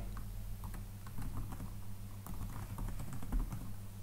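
Typing on a computer keyboard: scattered, irregular key clicks over a steady low hum.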